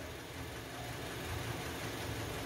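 Kia Sportage's four-cylinder petrol engine idling steadily, faint under the room. Cylinder four, which had misfired with a dead ignition coil, is now firing on a new original coil.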